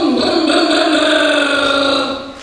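Motorcycle engine held at high revs, one steady note falling slightly in pitch.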